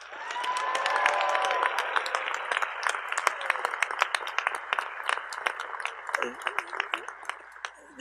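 Large audience applauding, with a few shouts of cheering in the first two seconds; the clapping thins out and dies away toward the end.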